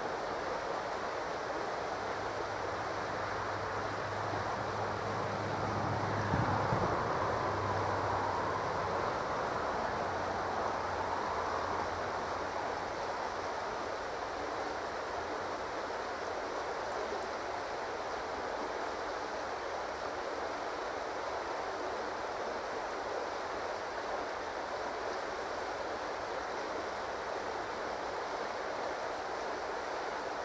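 A steady rushing noise, with a low hum joining it from about two seconds in and fading out near twelve seconds.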